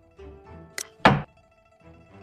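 Move sound of a xiangqi board replay: a short sharp click followed a quarter second later by a loud thunk, like a wooden chess piece being set down, over quiet background music.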